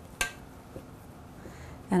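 Faint handling sounds of hands squeezing and patting crumbly biscuit dough in a plastic mixing bowl, with one sharp click about a quarter second in.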